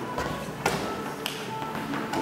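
Music playing, with two sharp slaps of balls being struck or caught by hand, the louder one at the first strike.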